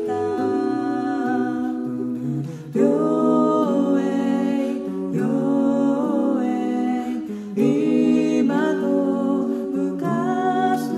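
Five-voice a cappella group singing sustained close-harmony chords, with a new chord coming in about every two and a half seconds.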